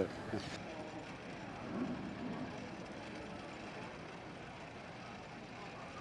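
Faint, steady background noise, with a brief distant voice about two seconds in.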